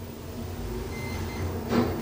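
ITK elevator car arriving and its automatic doors opening: a low mechanical rumble from about half a second in, with one short clunk near the end as the doors start to open.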